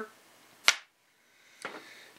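One sharp click, a little under a second in, from the metal parts of a small RC scale transmission being handled with its back cover just pulled off.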